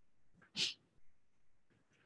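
A single short, breathy sound from a person at a microphone about half a second in, against faint room tone.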